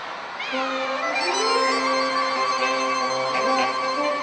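Saxophone quartet starting to play about half a second in: a quick falling slide, then a low held note. Further saxophones slide in above it to build a sustained chord.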